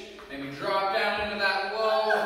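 A person's voice, in drawn-out pitched tones, over a steady low hum.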